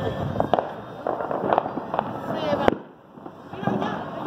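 New Year's fireworks and firecrackers going off around the city: a dense crackle broken by many sharp bangs. The loudest bang comes about two and a half seconds in and is followed by a brief lull.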